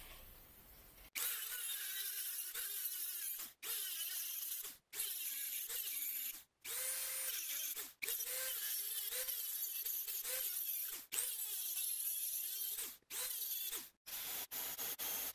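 Handheld rotary tool with a cutoff wheel cutting a small machined metal ring clamped in a vise. It runs in several bursts with short stops between them, its high whine dipping and wavering as the wheel bites into the metal.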